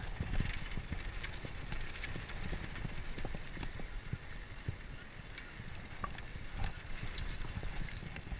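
Mountain bike rolling down a dirt trail: a steady low rumble from the tyres and the ride, with frequent small irregular clicks and rattles from the bike over the rough ground.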